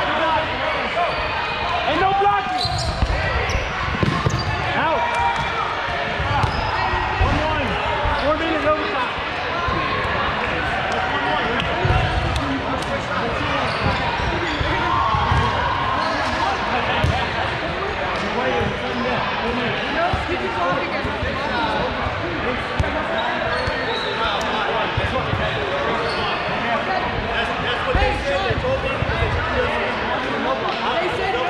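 Players' voices shouting and talking over one another in a large gym, with rubber dodgeballs thudding on the hardwood court at irregular moments during play.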